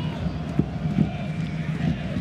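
Stadium crowd noise heard through a soccer broadcast, steady and full, with two short knocks about half a second and one second in.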